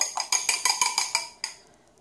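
A metal fork beating an egg in a small glass measuring cup: quick, even clinks of metal on glass, about six a second, that stop about one and a half seconds in.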